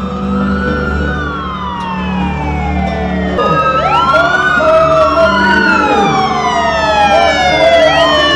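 Several sirens wailing at once, their overlapping tones sweeping slowly up and down and getting louder toward the end.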